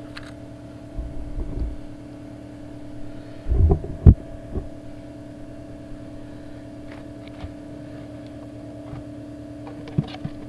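Handling noise while working an in-ground plastic irrigation valve box: a brief rumble about a second in, then a cluster of knocks ending in one loud thump about four seconds in, and a few light clicks as the lid comes off. A steady low hum runs underneath.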